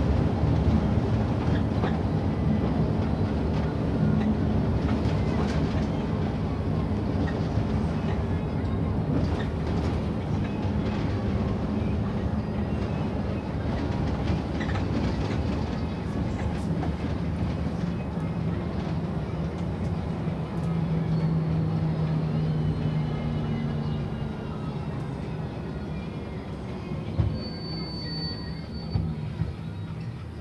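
Engine and road noise heard from inside a moving bus: a steady rumble with an engine hum that shifts in pitch now and then. It fades somewhat over the last several seconds, with a couple of knocks and a short high beep near the end.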